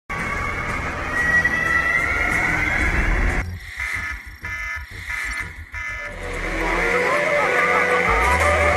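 Action-film soundtrack: music with a vehicle engine whose note slowly rises over the first three seconds or so, then a few seconds of pulsing electronic computer beeps, then a deep bass-heavy music cue near the end.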